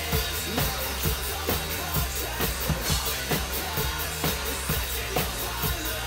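Metalcore track playing at full band, with an acoustic drum kit played live along to it: a regular pattern of kick and snare hits under constant cymbal wash.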